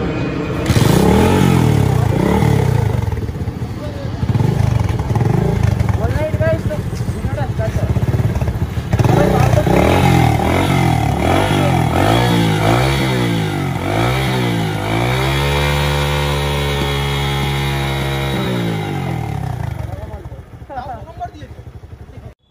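Kawasaki Caliber's small single-cylinder four-stroke engine being revved over and over, its pitch rising and falling. About two-thirds of the way in it is held at a high steady rev for a few seconds, then drops back down.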